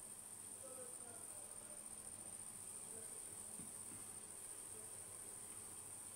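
Quiet room tone with a faint, steady high-pitched whine.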